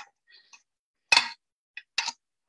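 A few short clicks from handling fly-tying tools at the vise. The loudest comes a little past a second in, and two smaller ones follow near the end, with silence between.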